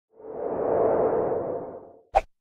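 Whoosh sound effect of an intro transition, swelling up over the first second and fading away by the end.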